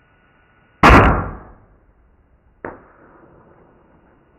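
A bow firing an arrow into a whitetail buck: one loud sharp crack about a second in that dies away quickly. A second, fainter knock follows about a second and a half later.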